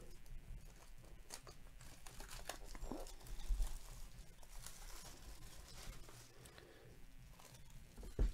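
Clear plastic shrink-wrap being torn and peeled off a cardboard trading-card hobby box, a faint crinkling with scattered sharper crackles, loudest about three seconds in.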